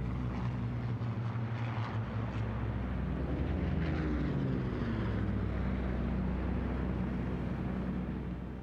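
Propeller aircraft engines droning steadily, with a pitch that slides down about halfway through as a plane passes.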